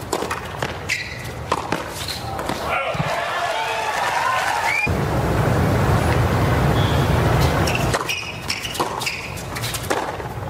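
Tennis balls struck with racquets at the end of a rally on a hard court, then a crowd applauding and cheering the point, loudest from about five to eight seconds in. Near the end, a few sharp ball bounces before the next serve.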